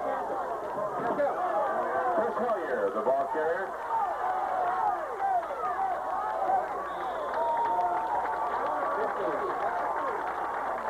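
Football crowd in the stands yelling and cheering during a play, many voices overlapping at once, with a muffled, dull sound.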